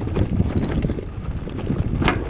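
Mountain bike rolling down a rough dirt trail: irregular rattles and knocks over a low rumble.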